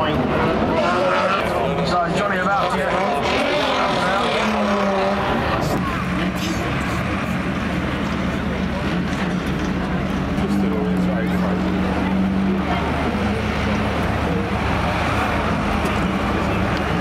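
Banger race cars' engines revving and running hard for the first six seconds or so, then a steadier low engine drone as a farm tractor moves up close.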